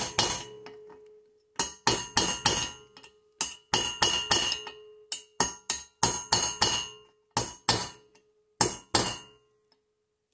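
Hammer tapping a steel punch to peen a Kohler Courage engine's aluminium cylinder head around the intake valve guide: light taps, about three a second in short runs, each with a ringing ping, stopping near the end. The peening mushrooms the metal into the guide so that it cannot shift.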